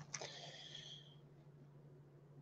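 Near silence: room tone with a faint steady low hum, and a faint brief hiss in the first second.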